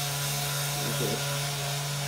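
Handheld corded electric massager running steadily while pressed against a patient's lower back, a constant motor buzz.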